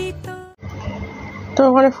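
Background music ends abruptly about half a second in, followed by about a second of low, steady background noise. A woman's voice begins speaking near the end.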